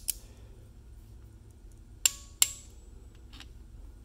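Click-type torque wrench clicking twice, a fraction of a second apart, about halfway through: a camshaft thrust plate bolt reaching its set torque of 106 inch-pounds. Each click is sharp and metallic with a short ring.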